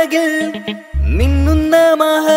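Mappila song: a voice singing a melodic line with pitch glides over backing music, with a deep bass note entering about a second in.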